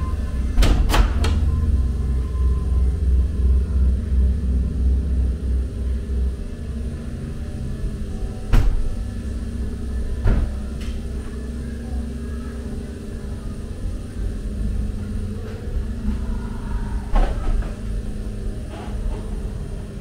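Ghost train ride car rumbling along its track, heaviest over the first six seconds. Sharp knocks and bangs come over it: a few about a second in, a loud one about eight and a half seconds in, and more near ten and seventeen seconds.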